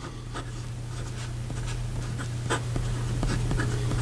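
PenBBS 308 fountain pen with a fine steel nib writing on lined paper: light, irregular scratches of short pen strokes, over a steady low hum.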